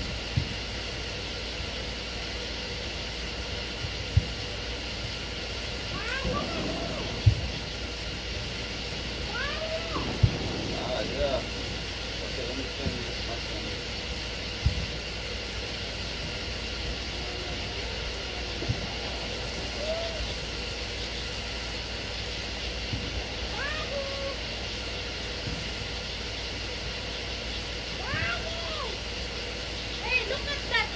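Outdoor evening ambience with a steady high-pitched hum, a few short rising-and-falling calls from distant voices, and several sharp knocks on the microphone.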